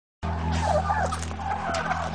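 A flock of white domestic turkeys calling, short calls that slide up and down in pitch, over a steady low hum.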